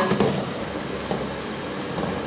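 Hands kneading and squeezing minced pork in a stainless steel bowl, a soft, steady squishing noise.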